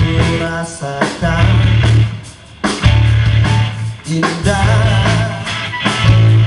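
Live pop-rock band of keyboard, electric guitars, bass and drums playing through a PA. The music drops away briefly about two seconds in, then the full band comes back in.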